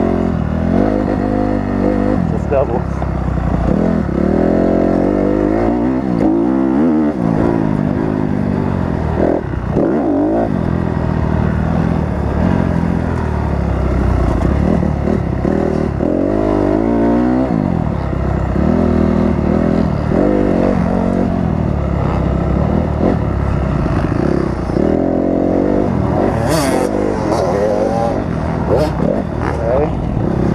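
Four-stroke single-cylinder Honda CRF250R motocross bike being ridden hard round a dirt track, its engine revving up and dropping back again and again through the throttle and gear changes. A short sharp clatter comes near the end.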